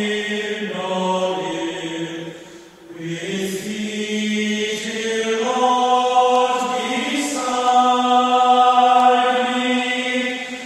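A slow hymn sung by one voice, long held notes moving in steps, with a short breath pause about three seconds in.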